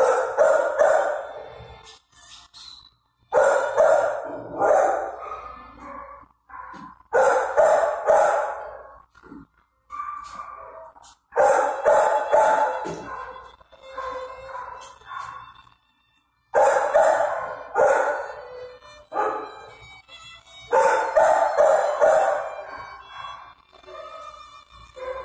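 Dogs barking in bouts of several barks, a few seconds apart, each bout ringing on in a hard-walled kennel room.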